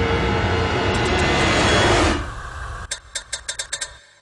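A loud, steady mechanical din that cuts off abruptly about two seconds in, followed by a quick run of about eight sharp clicks.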